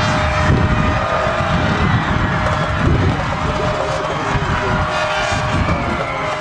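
Wind buffeting the microphone in irregular low rumbles, over a steady wash of crowd and sideline noise with a faint steady tone running through it.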